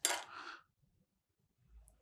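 A metal spoon clatters briefly with a short ringing rattle as it is set down, then near silence.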